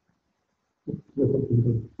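Video-call audio dropping out: about a second of dead silence, then a muffled, low, garbled sound like a voice breaking up over a failing internet connection.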